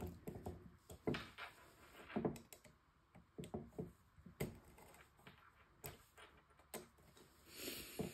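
Sparse, light clicks and taps of an Allen wrench and small screws being worked on an EFI throttle body, loosening the screws of the idle air control motor. There is a short rustle near the end.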